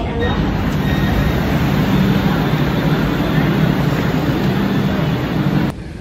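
Steady low running noise inside a moving commuter train carriage. It cuts off suddenly shortly before the end.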